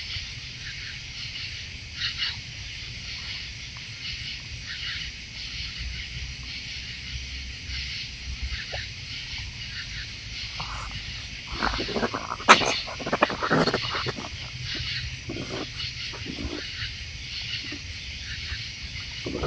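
Raccoons feeding close to the ground, with a cluster of harsh raccoon growls and snarls from about halfway through for a couple of seconds, as if squabbling over food. A steady high chirring of night insects runs underneath.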